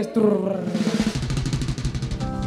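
Live band drum kit playing a fast snare drum roll, with low drum hits joining about a second in.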